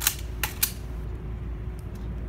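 Rifle being handled in a precise drill inspection: three sharp slaps and clicks within the first two thirds of a second, as gloved hands strike the stock and the rifle's metal parts knock. A steady low rumble sits underneath.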